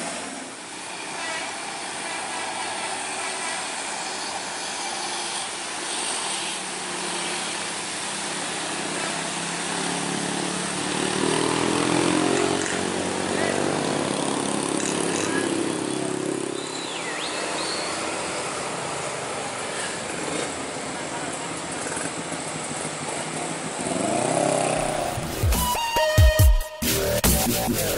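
Road traffic noise on a wet road: heavy trucks' diesel engines running under the steady hiss of rain and wet tyres, with one engine's note rising and falling in the middle. Electronic music with a heavy bass comes in near the end.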